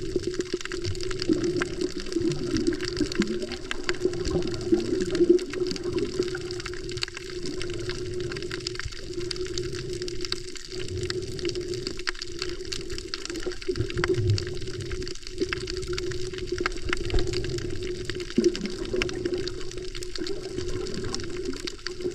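Muffled underwater water noise from a submerged action camera: a continuous swishing and gurgling wash with a steady low hum underneath.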